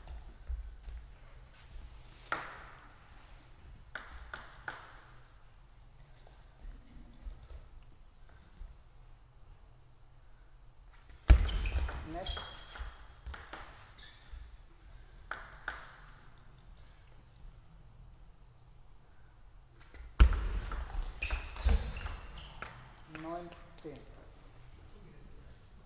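Table tennis ball play: the plastic ball clicking sharply off the bats and the table, a few single taps early on, then quick runs of hits in rallies about 11 and 20 seconds in, each starting with a loud thump. A brief voice near the end.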